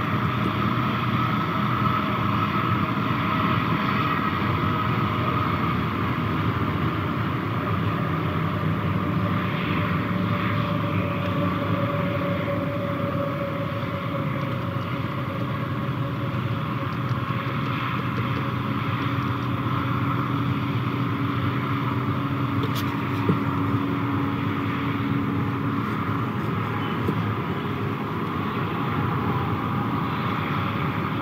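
Steady drone of a large motor engine, with several humming tones that drift slowly in pitch through it.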